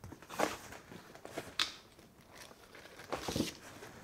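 Plastic bag crinkling and rustling in a few short bursts, with light scrapes, as a bagged plastic comic slab is handled and lifted out of a cardboard box.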